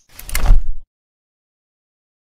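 Intro sound effect: a swelling whoosh with a deep low boom that peaks about half a second in and cuts off suddenly just under a second in.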